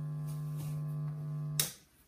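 Steady low electrical hum from a handheld microphone setup. It cuts off suddenly with a click about one and a half seconds in as the microphone is handled.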